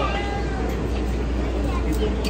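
Steady low hum of a passenger transit vehicle's interior, with muffled voices.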